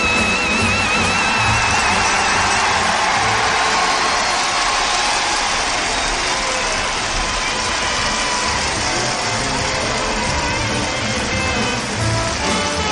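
Jazz concert band playing: a high held, wavering horn note in the first few seconds gives way to a dense, noisy ensemble stretch, with clearer pitched lines returning near the end.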